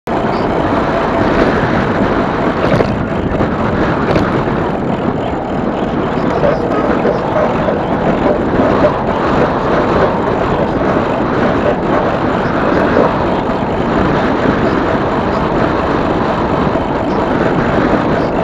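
Steady rush of wind on the microphone mixed with tyre noise from an electric bicycle rolling along a paved path, with a few faint knocks from bumps.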